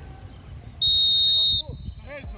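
A coach's whistle blown in one steady, shrill blast of a little under a second, about midway through.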